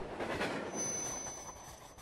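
Train sound effect dying away, with a thin high metallic squeal of wheels on rail coming in about two-thirds of a second in.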